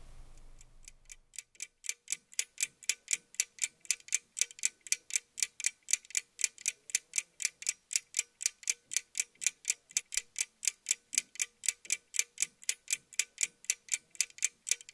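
A clock ticking steadily, about four ticks a second, fading in over the first two seconds.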